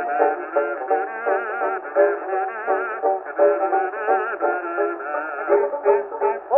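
Kazoos buzzing a wavering melody over short plucked banjo notes in an instrumental break. The sound is thin and narrow in range, typical of a 1924 acoustic-era Edison Diamond Disc recording.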